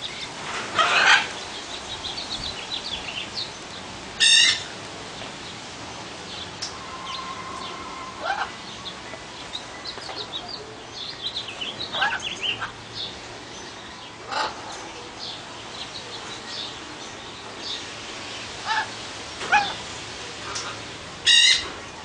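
A group of captive parrots calling: scattered chirps and short whistles throughout, broken by loud harsh squawks about a second in, about four seconds in and again near the end.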